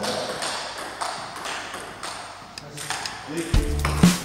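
Table tennis balls being knocked back and forth on paddles and tables in a gym hall, a few sharp irregular clicks over the hall's background noise. Music with a heavy bass comes in near the end.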